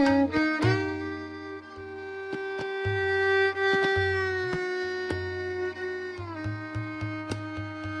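Violin playing a slow phrase in Raag Jog with tabla accompaniment: a gliding note settles into a long held note that steps down a little after six seconds, over sharp tabla strokes and the deep resonant pulses of the bass drum.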